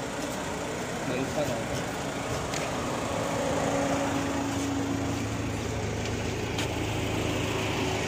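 A car engine idling close by: a steady low hum over street background noise, with faint voices about a second in.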